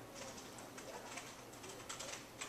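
Faint typing on a computer keyboard, scattered keystroke clicks with a quick cluster near the end, over a low room hum.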